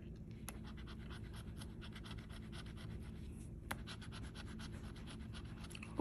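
A scratch-off lottery ticket being scratched: quick, faint, repeated scraping strokes rubbing the coating off the play spots.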